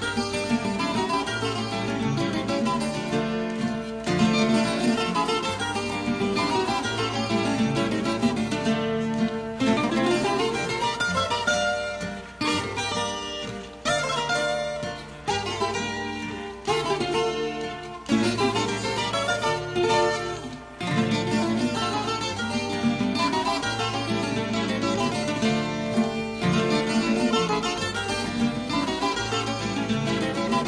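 Puerto Rican cuatros, plucked steel double-course strings, playing a lively instrumental melody over a lower accompanying line. The music thins briefly near the middle and drops out for a moment about two-thirds through.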